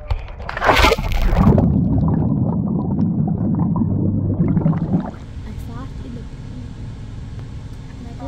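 A splash as a person jumps into a swimming pool, followed by a muffled, rumbling swirl of bubbles heard underwater. About five seconds in it gives way to the quieter, steady hum of a car's cabin on the road.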